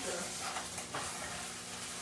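Hamburger meat for chili sizzling in a pan, a steady hiss, with a few faint scrapes of stirring.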